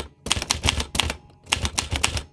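Typewriter-style typing sound effect: a quick run of key clicks, with a short pause about a second in.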